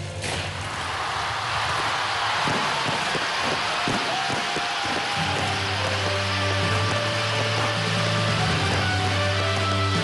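Rows of stage fountain fireworks igniting in a sudden burst and spraying with a dense hissing crackle over loud show music. The hiss fades after about five seconds and a deep sustained bass in the music takes over.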